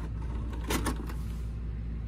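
Sanyo VWM-696 VHS VCR's loading mechanism drawing in a pushed-in cassette, with two quick mechanical clicks just under a second in over a steady low hum.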